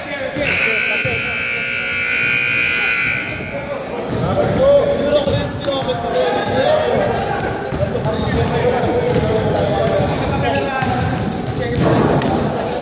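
Gymnasium scoreboard buzzer sounding steadily for about three seconds, marking the end of the game, followed by players' voices in the hall.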